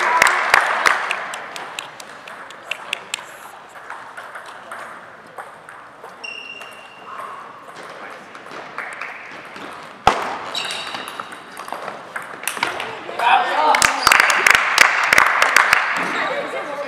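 Table tennis balls clicking off paddles and tables, with voices in the hall. The clicks come thick at the start and again near the end and are sparse in the middle, with one sharper knock about ten seconds in.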